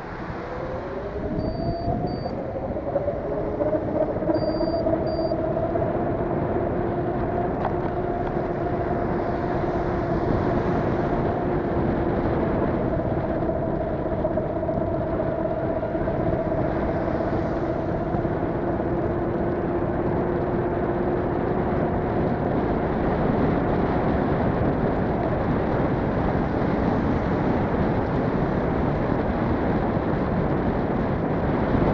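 A car driving on a wet road: tyre noise and an engine hum build up over the first few seconds as it speeds up, then hold steady at cruising speed. Two short double beeps sound near the start.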